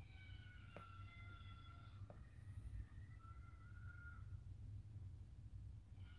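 Near silence: a low steady room hum, with faint sustained high tones over the first four seconds or so and two soft clicks about one and two seconds in.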